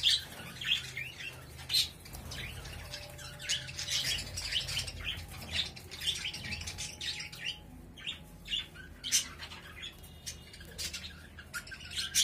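A flock of budgerigars chirping and chattering, many short, sharp calls overlapping at irregular intervals, over a low steady hum.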